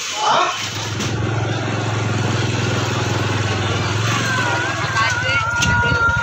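A motorbike engine running steadily at a constant note while the bike rides along, joined about four seconds in by a steady high tone.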